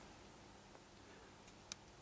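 Near silence: faint room tone, with one short faint click near the end.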